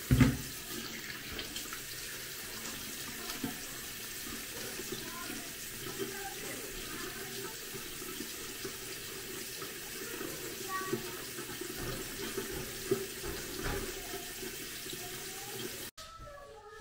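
Bathroom sink tap running steadily during face washing, with a brief thump right at the start.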